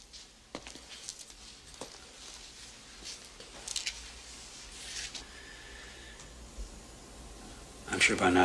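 Quiet film soundtrack of a cell scene: low room hum with a few faint scattered knocks and two short hissing rustles near the middle, and a faint thin tone for about a second after them.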